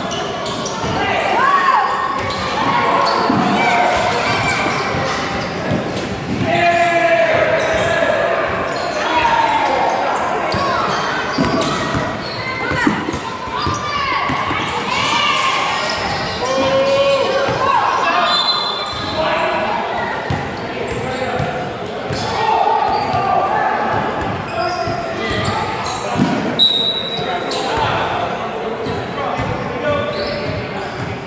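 Basketball game in a large gymnasium: a basketball bouncing on the hardwood floor among players' and spectators' voices, all echoing in the hall.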